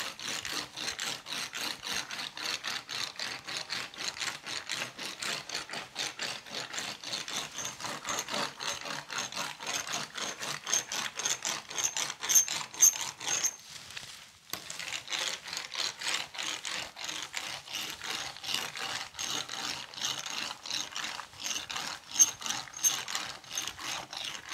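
A ribbed metal pencil roller is rolled back and forth over wet fiberglass and resin, giving a rapid, continuous clicking rattle as it consolidates the laminate and squeezes the air out. The clicking breaks off for about a second just past halfway, then starts again.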